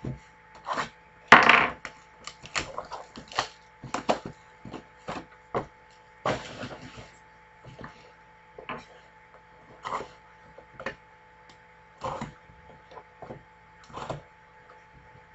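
Cardboard trading-card hobby boxes being handled, shuffled and set down on a tabletop: a series of light knocks and scrapes, the loudest about a second and a half in.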